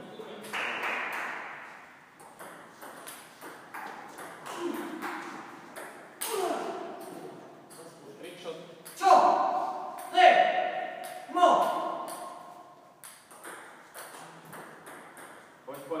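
Table tennis ball clicks, irregular and scattered, from bats and tables. Four louder, ringing pings come in the middle stretch, each fading over about a second.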